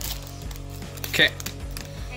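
Steady background music with a short spoken 'okay' about a second in, over faint crinkling of a foil trading-card booster pack being torn open.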